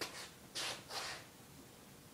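Two brief, soft rustling or scraping noises, about half a second and a second in, after a faint click at the start.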